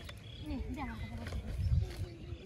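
Indistinct voices over a low rumble, loudest shortly before the end, typical of wind on the microphone.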